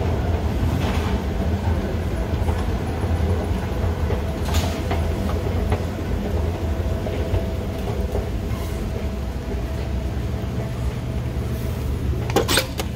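Steady low mechanical rumble with a faint constant hum, broken by a few light clicks.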